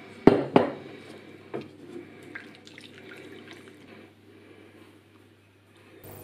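Wooden spatula knocking and scraping against a metal saucepan while milk is mixed into a roux. There are two sharp knocks in the first second, then lighter taps that thin out.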